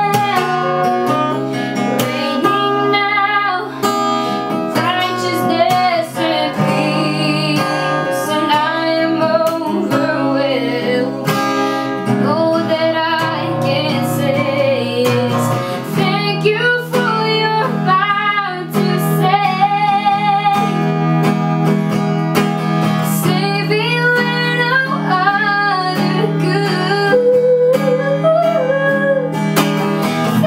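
A boy singing a slow worship song over a strummed acoustic guitar, the voice carrying the melody throughout.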